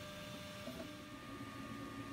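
Ultimaker 3 3D printer running as it prints its XY calibration grid: a faint steady hum with a few thin, steady whining tones from its fans and stepper motors.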